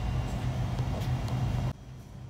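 Steady low hum and rumble of indoor store background noise, which cuts off suddenly near the end.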